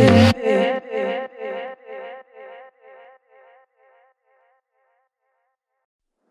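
The tail end of an electronic dance track: the beat and bass stop and a short pitched figure repeats as an echo about three and a half times a second, each repeat fainter, dying away into silence about four seconds in.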